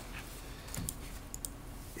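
A few light, separate clicks of computer keys being pressed, over low room noise.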